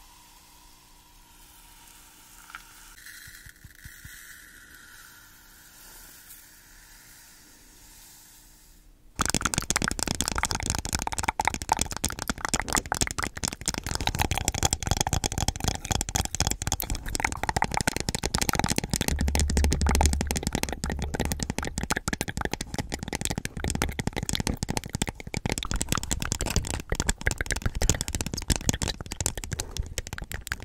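Fine white granules in a green plastic cup, pressed right against the microphone. For about the first nine seconds there is only a faint hiss as they are poured in. Then, suddenly, a loud, dense crackling rattle sets in and keeps on as the granules shift and scrape inside the cup.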